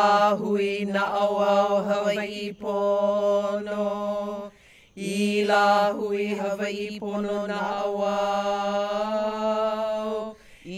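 Hawaiian chant (oli), the voice held on one steady reciting pitch with shifting vowels, in two long phrases with a short pause for breath about halfway.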